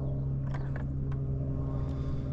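Electric trolling motor running with a steady, even hum at one constant pitch, with a few faint ticks over it.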